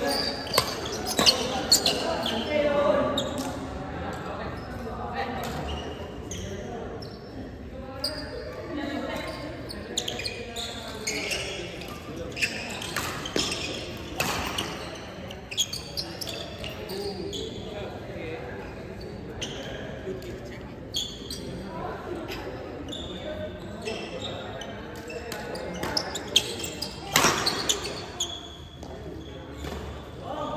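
Badminton doubles rally: rackets hitting the shuttlecock in quick, irregular strikes, with players' footfalls on the court, echoing in a large sports hall.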